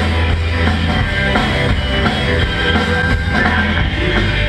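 Rock band playing live: drum kit, bass guitar and electric guitars at a steady, loud level.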